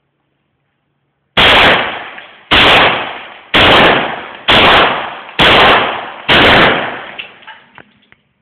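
A 9mm Beretta pistol firing blank cartridges: six loud shots spaced about a second apart, each followed by a long echoing tail.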